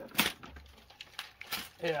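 A short crinkling rustle from a Pokémon card tin and its plastic wrapping being handled, followed by a few faint ticks.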